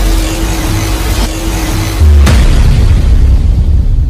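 Cinematic intro sound design over heavy bass: a held low tone, then a loud boom about two seconds in that carries on as a deep rumble.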